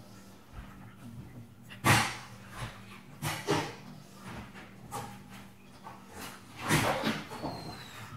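A dog making two short, loud sounds, about two seconds in and again near seven seconds, with a few softer ones in between.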